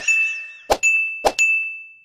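Sound effects of an animated subscribe end screen: three sharp clicks, each followed by a high bell-like ding that rings out and fades away near the end.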